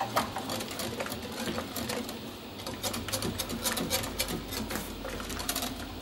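Wire whisk stirring liquid in a glass bowl, its wires clicking rapidly and unevenly against the glass, while the hot sugar syrup is mixed into the gelatin to dissolve it.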